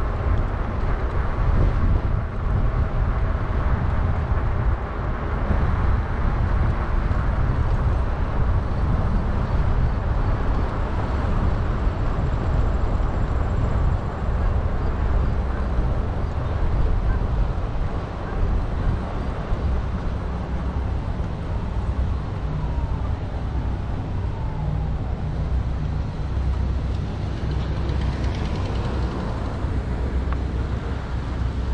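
Continuous low rumbling wind noise on the microphone mixed with road and tyre noise from a Lectric XP fat-tyre folding e-bike riding along a paved road.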